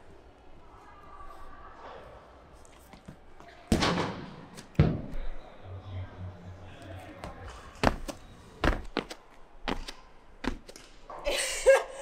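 Heavy thuds of a thrown shot landing on the indoor track, the two loudest close together about four and five seconds in, followed by several lighter knocks later on.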